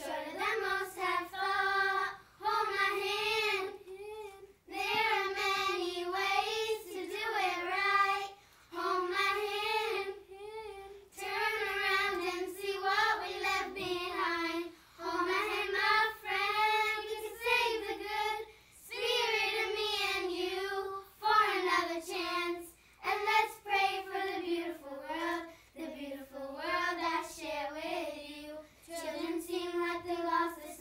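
A group of young schoolgirls singing together in unison without accompaniment, in phrases of a few seconds with short breaks for breath between them.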